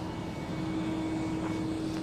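A steady mechanical drone holding one pitch, over an even outdoor background noise.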